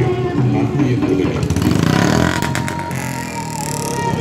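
A voice over background music, with a motor vehicle passing about halfway through, its noise rising and then fading, followed by a few clicks.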